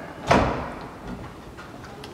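Over-the-range microwave door unlatching and swinging open: a single sharp clack about a third of a second in, then fading away.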